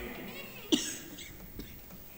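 A person coughs once, sharply, a little under a second in.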